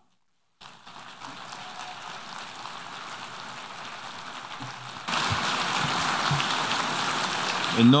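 Audience applause that starts softly after a brief silence and grows louder about five seconds in.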